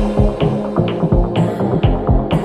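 Electro house dance music: a steady kick drum about twice a second under a throbbing synth bass, with a bright hissing burst about one and a half seconds in.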